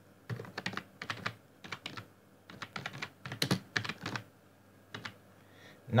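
Typing on a computer keyboard: a run of quick, irregular key clicks that stops after about four seconds.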